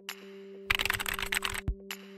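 Computer-keyboard typing sound effect: a quick run of clicks starting about two-thirds of a second in and a short burst near the end, over a steady held low music note.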